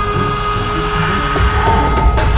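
Film background score: a held high note over a low rhythmic pulse, with a swelling noisy wash.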